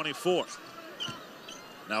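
A basketball dribbled on a hardwood court, a few faint bounces, over the low murmur of an arena crowd.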